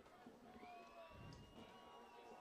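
Near silence, with faint distant voices drifting in the background.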